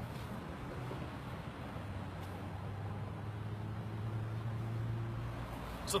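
Steady outdoor background noise with a low hum, the kind of ambient vehicle and traffic sound heard around a car lot.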